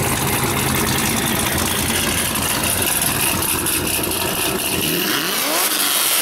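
Pontiac GTO V8 exhaust running steadily at idle, then revved near the end, its pitch climbing.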